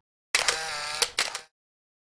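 A short sound effect for a logo animation, about a second long: a hissy, shutter-like burst with a few sharp clicks, set between two silences.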